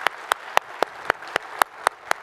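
Audience applauding, with one close pair of hands clapping sharply and evenly at about four claps a second over the softer, continuous clapping of the crowd.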